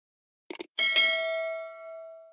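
Subscribe-animation sound effect: a quick double mouse click about half a second in, then a bright bell ding that rings on and slowly fades.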